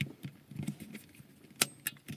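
Quiet car cabin with faint engine and road noise, and a sharp click about a second and a half in, followed by a lighter one.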